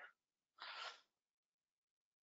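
Near silence, broken about half a second in by one short, soft breath into the microphone.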